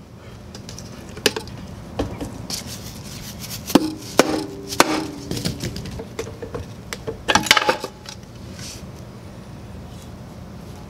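Knocks and clicks of the cast-aluminium CVT cover on a Yamaha Zuma scooter as it is worked and pried loose, its seam stuck with gasket sealant. The loudest knocks come near the middle and again about seven and a half seconds in, a couple of them leaving a short ring.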